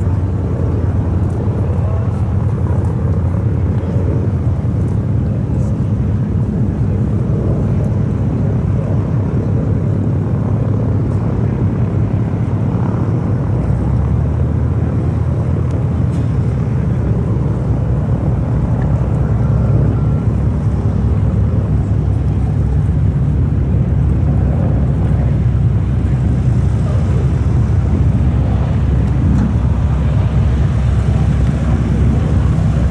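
Boeing B-17 Flying Fortress's four Wright R-1820 radial engines droning steadily at reduced power on a landing approach, a low, even rumble whose pitch shifts slightly about halfway through.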